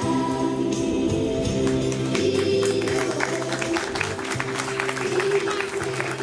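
Background music with sung vocals over a steady bass line, with short sharp beats coming in about two seconds in.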